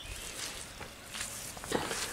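Faint rustling and light footsteps, with a few soft ticks, during a pause in the talk.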